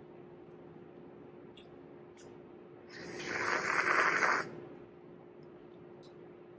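A person's long, noisy breath, about a second and a half long, building up and then stopping abruptly, taken while tasting a sip of espresso. A faint steady hum runs underneath.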